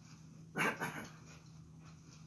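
A dog barks briefly about half a second in, a loud short bark followed at once by a weaker second one.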